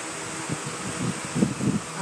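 Steady whir of an electric fan, with a run of soft, low rubs and bumps in the middle from a paintbrush working paint onto a wooden cabinet.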